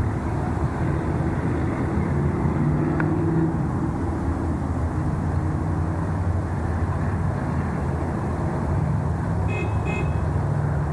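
A car engine idling, a steady low hum that rises and falls slightly in pitch, over general parking-lot traffic noise.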